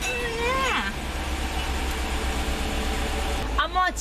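Dodge Durango R/T's 5.7-litre HEMI V8 idling, a steady low hum heard from inside the cabin. A short exclamation comes right at the start, and a voice starts near the end.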